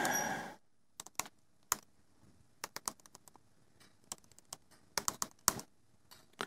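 Typing on a computer keyboard: scattered keystroke clicks, singly and in small quick clusters, as a line of code is entered.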